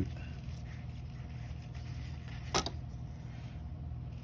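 Quiet handling of baseball trading cards over a steady low hum, with one sharp click about two and a half seconds in.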